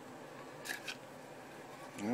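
Two short, sharp clicks close together a little under a second in, from a plastic knife sheath and a thin wooden stick knocking together as they are handled while cord is worked through holes drilled in the sheath.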